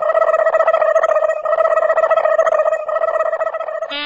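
A loud, steady ringing tone with a rapid flutter, held at one pitch.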